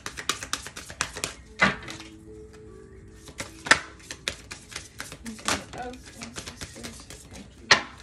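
A deck of oracle cards being shuffled by hand: a rapid run of papery clicks and snaps, with a louder slap about every two seconds as the cards are knocked together.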